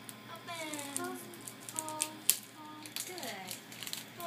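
Shiny gift wrapping being handled and pulled open, with scattered sharp crackles and rustles, the loudest a little over two seconds in. Quiet voices, including a child's, run underneath.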